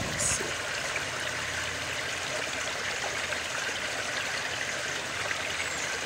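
Steady trickling and splashing of backyard pond water, kept circulating by pumps running fast.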